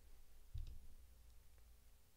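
Faint computer mouse clicks, a couple of short clicks about half a second in along with a low thump, and another faint click a little later, over a low hum.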